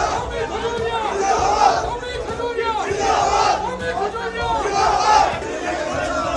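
A crowd of protesters shouting slogans together, the chant coming in repeated loud phrases about every second or so.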